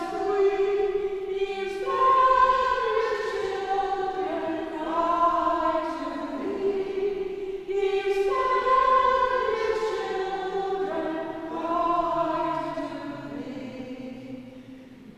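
Slow unaccompanied religious song sung by a woman's voice in long held notes that step up and down, the melody repeating about halfway through.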